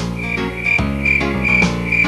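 A frog-croak sound effect, a short high call repeated evenly about twice a second, over the song's backing music.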